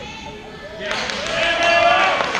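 Spectators' voices shouting over each other, swelling about a second in, with a basketball bouncing on a hardwood gym floor.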